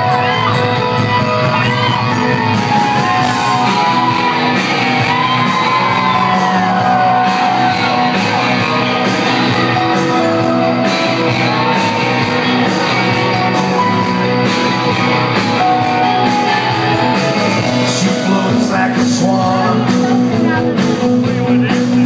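Live rock band playing loudly in a concert hall: electric guitar and a steady, evenly ticking drum beat, with singing over the top.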